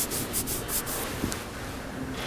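A series of short, dry rubbing strokes close to the microphone, several in the first second and thinning out after that.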